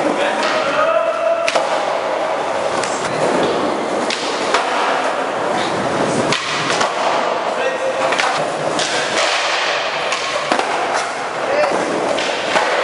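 Skateboard wheels rolling over a hard tiled floor, broken several times by sharp clacks of the board popping and landing during flatground tricks.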